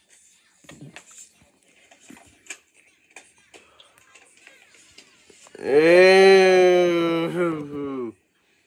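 A person's voice holding one long, steady, drawn-out vocal sound for about two and a half seconds near the end, after several seconds of faint clicks and handling noise.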